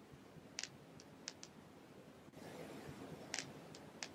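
Faint, scattered small clicks, about six at irregular spacing, over quiet room hiss.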